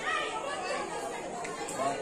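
Voices only: a priest reciting Sanskrit puja mantras, with the chatter of several people talking over it.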